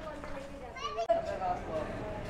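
Indistinct chatter of several people, children's voices among them, with a brief higher-pitched child's call about a second in.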